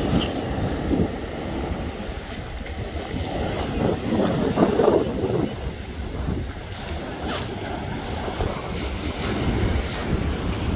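Sea waves breaking and washing up a shingle beach, with wind buffeting the microphone. The surf swells loudest about four to five seconds in.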